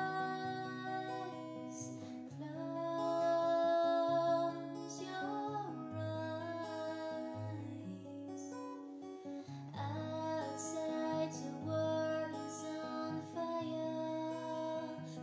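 Steel-string acoustic guitar with a capo at the fourth fret, playing a slow chord progression with a moving bass line under a woman's soft singing of a gentle lullaby.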